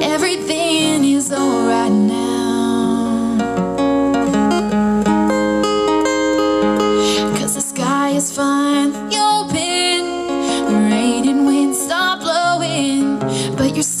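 Acoustic guitar strummed as accompaniment to a woman singing live.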